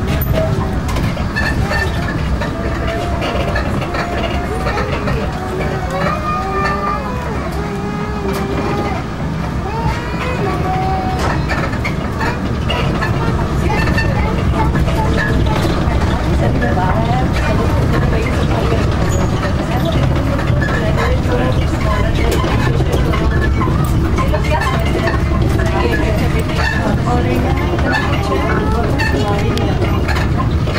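Street ambience: indistinct voices, clearest in the first half, over a steady low rumble, with scattered light clicks.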